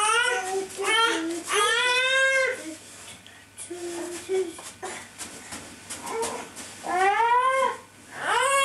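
A small child's high-pitched squeals in play, about four rising-and-falling cries. The longest lasts about a second.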